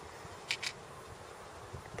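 A pause with only faint, even outdoor background noise and two brief soft clicks about half a second in.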